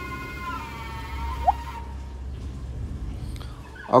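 Two cordless drills boring into a log with auger bits: a steady, high motor whine that dips slightly in pitch about half a second in and stops about two seconds in as the DeWalt DCD999 finishes its hole. The Hilti SFC 22-A carries on underneath with a low rumble, and there is one short squeak midway.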